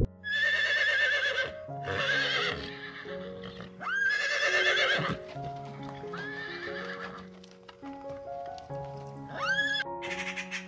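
Horse whinnying about five times, each call a high, quavering cry, some opening with a rising sweep, over soft background music.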